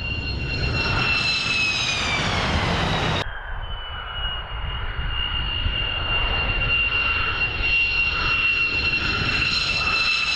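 F-15E Strike Eagle's twin jet engines at takeoff power as the jet lifts off and passes: a loud low rumble under a high whine that drops in pitch as it goes by. About three seconds in, the sound cuts abruptly to another takeoff, its whine steady at first and starting to fall near the end.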